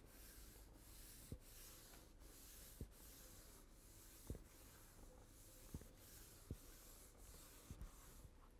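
Faint rubbing of a tack cloth wiped over freshly sanded wood floorboards, lifting the fine sanding dust before finishing, with a few soft knocks along the way.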